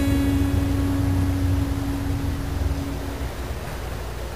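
A single acoustic guitar note left ringing, slowly fading out over about three seconds, over a steady low rumble of recording noise.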